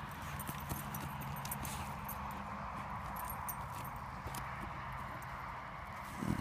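Small dog digging into a burrow in dry earth: a quick, continuous run of paw strokes scratching and scraping soil and dry grass, with many small ticks of flung dirt.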